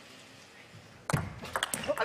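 Celluloid-type table tennis ball bouncing, a quick run of light sharp clicks in the second half after a quiet stretch of arena hush, opened by a duller knock about a second in.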